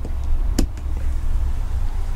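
A wall-mounted rocker light switch clicks once, a little over half a second in, switching on an LED strip light. A steady low rumble runs underneath.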